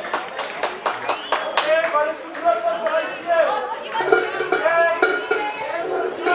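A group of boys' voices calling out and chattering together, some lines held on steady pitches as in a chant. There are several sharp claps in the first second and a half.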